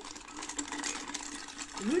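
Hand-pumped spiral whisk of a glass vinaigrette mixing carafe spinning inside the nearly empty bottle, a rapid plastic whirring rattle that fades out near the end.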